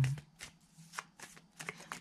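Tarot cards being handled out of the picture: several separate, sharp card clicks.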